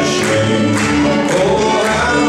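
Live acoustic string band playing upbeat country-swing: upright double bass, fiddle and acoustic guitar, with a steady beat of about two strokes a second.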